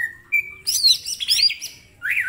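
A green leafbird (cucak ijo) singing loud and close. It gives a short falling whistle, then another short note, then a rapid run of sharp, looping notes.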